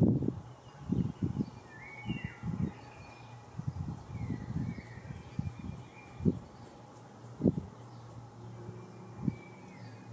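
Wind buffeting the camera's microphone in uneven gusts, with a few short whistled bird calls and a faint run of high ticks, about four a second, between about one and a half and five seconds in.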